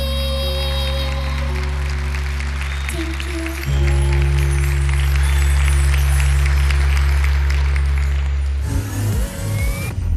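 The closing held chords of a pop-ballad backing track, with an audience applauding over them. A fuller chord comes in partway through. Near the end it gives way to a short TV jingle with rising whooshes.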